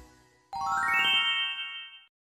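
A chime sound effect: about half a second in, a quick rising run of bright bell-like notes, which ring on together and cut off near the end.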